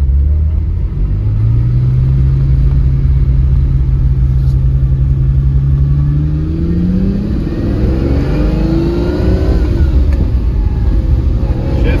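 Lamborghini Countach 25th Anniversary's downdraft-carburetted 5.2-litre V12 accelerating, heard from inside the cabin. The revs climb steeply from about halfway through, break briefly about two-thirds through, then rise again as the car shifts into second.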